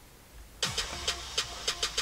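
Near silence, then about half a second in the opening of a K-pop music video's soundtrack starts: a low rumble under a quick, uneven run of sharp ticks and a steady high tone.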